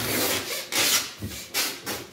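Packing tape being peeled off a cardboard box, tearing noisily in about three pulls.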